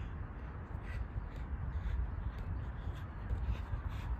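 Wind rumbling on the microphone, with a few faint, light taps of a football being touched on artificial turf.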